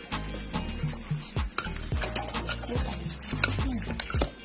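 A metal spoon scraping and stirring through cookie dough in a metal mixing bowl, with scattered clinks, over background music with a bass line and a steady beat.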